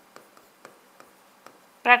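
A pen writing on a board: faint, irregular taps and scratches of the pen tip as a word is written. A woman starts speaking right at the end.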